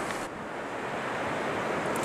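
Steady noise of surf breaking on the beach, mixed with wind buffeting the microphone. About a quarter second in the sound turns duller, losing its top end.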